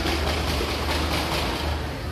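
Busy food-market ambience: a steady low hum under an even wash of crowd noise, with no single event standing out.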